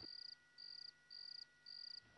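Cricket chirping faintly: short high trills repeating evenly, about two a second.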